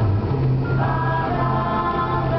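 Choral music: voices singing sustained chords, shifting to a new chord a little under a second in.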